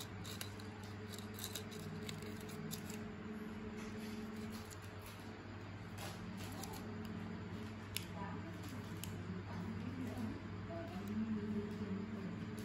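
Steady low electrical hum under faint, indistinct background voices, with scattered small clicks and handling sounds in the first few seconds.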